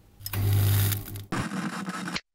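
Old-television static and interference sound effects: a buzzing hiss with a strong low hum, breaking off and starting again as a second burst of static about a second and a quarter in.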